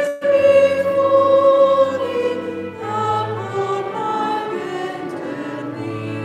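A congregation singing a slow hymn with long held notes.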